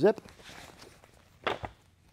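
A fabric training sleeve being unzipped and pulled off the forearm, with faint zip and fabric rustle, then one sharp clack about a second and a half in.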